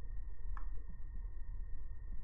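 Room tone: a steady low rumble with a faint steady high whine, and one small click about half a second in.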